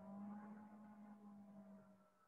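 Near silence with a faint steady low hum and a few fainter overtones.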